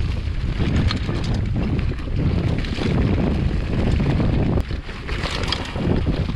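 Wind buffeting the microphone of a handlebar-mounted camera, mixed with the rattle and clatter of a mountain bike riding fast downhill over a dirt and rock forest trail.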